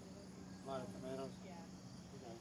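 Steady, high-pitched outdoor insect chorus with a low steady hum beneath it. Faint distant voices talk briefly near the middle.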